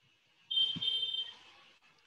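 A high-pitched electronic beep, about a second long in two short pulses, with a dull knock partway through.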